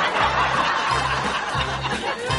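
Light comic background music with a bouncing bass line, overlaid by a canned laugh track of chuckling and snickering.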